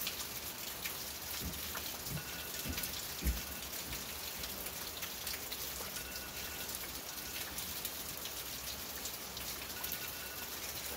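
Steady rain on the roof of a covered riding arena, a dense even hiss of fine drop clicks. A few low thuds come about one to three seconds in.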